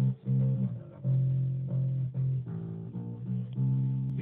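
Electric bass guitar playing a riff of low plucked notes, some short and choppy, some held for about half a second.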